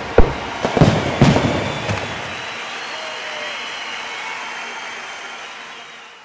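Fireworks going off: several sharp bangs in the first two seconds, then a steady hiss that fades out near the end.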